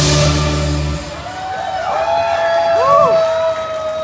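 A live band ends a rock song on a final drum-and-cymbal hit with a chord held for about a second. Then comes a long, steady held tone, with shouts and whoops from the audience over it.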